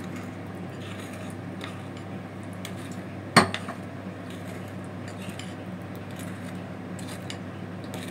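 A spoon stirring sauce in a porcelain bowl, with faint clinks against the bowl and one sharp clink about three and a half seconds in, over a steady low hum.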